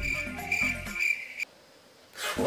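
A steady, high-pitched insect trill like a cricket's chirping, which cuts off suddenly about one and a half seconds in.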